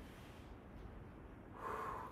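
A woman's short audible breath through the nose, about one and a half seconds in, taken while she pulls an elastic exercise band in a seated row. The rest is faint room tone.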